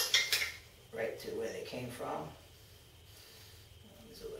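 Metal hand tools and small bolt hardware clinking together a few times at the start, in short sharp clicks, during bike assembly.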